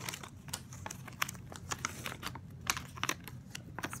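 A folded paper toy checklist being unfolded by hand: irregular crinkling and crackling of paper.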